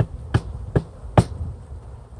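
Four dull thumps about 0.4 s apart, as a package of honeybees is rapped down to knock the bees to the bottom before they are shaken into the hive.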